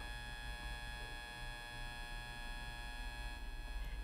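Low, steady electrical hum with a faint whine of many fixed high tones. It is the background noise of the recording setup, with no other sound over it.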